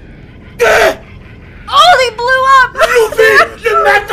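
A short, sharp gasp about half a second in, then loud, high-pitched shouting in several quick bursts.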